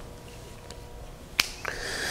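A quiet room with one sharp click about one and a half seconds in, after a fainter tick, followed by a person drawing breath.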